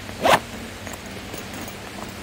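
A single quick pull of a zipper on a tactical sling pack, a short rising zip lasting about a quarter of a second a little after the start.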